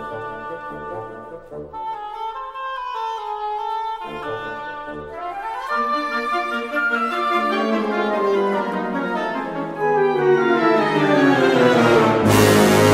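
Concert band playing sustained brass and woodwind chords under a pulsing bass line; the chords thicken and swell steadily louder into a crescendo near the end.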